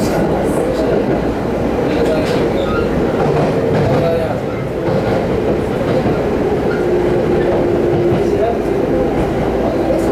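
Inside a Rinkai Line 70-000 series electric commuter train running slowly over station points: wheels clatter on the rail joints under a steady rumble, with a motor whine that drops lower in pitch in the second half as the train slows into the platform.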